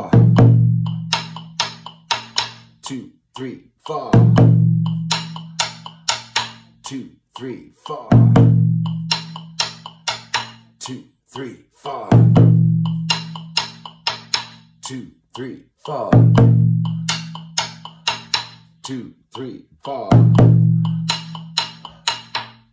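Djun djun bass drum played with sticks at 120 beats per minute against a metronome. A deep stroke rings out about every four seconds, with quicker sharp stick strokes between.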